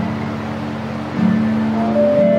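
Acoustic guitar playing sustained, ringing chords, growing louder about a second in.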